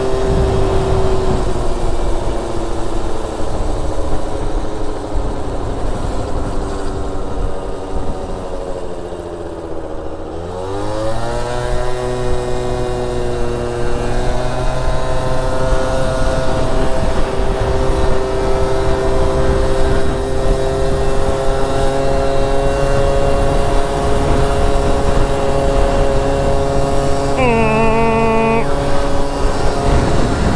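Gilera Stalker scooter's small two-stroke single running on the road. The engine note sinks as it slows for about ten seconds, climbs steeply as the throttle opens, then holds a steady cruise. A short higher-pitched tone sounds for about a second near the end, with wind rumble on the microphone throughout.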